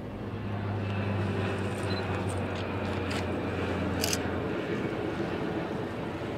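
A ship's horn sounding one long, steady, low blast of about four seconds, which then dies away.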